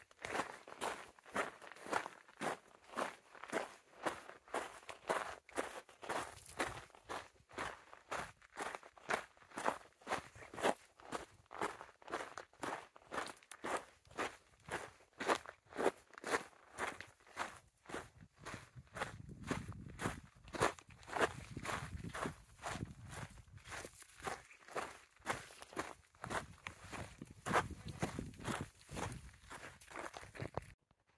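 Footsteps of one walker on a dirt trail, a steady pace of about two steps a second. A low rumble comes and goes in the second half.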